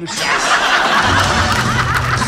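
Studio audience laughing, with music coming in with a steady low bass about a second in.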